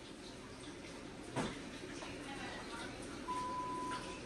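Faint, indistinct voices in a quiet room, with a sharp click about a second and a half in and a steady electronic beep near the end.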